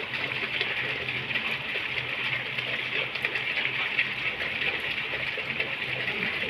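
Steady rain falling on shallow standing water, a continuous even hiss.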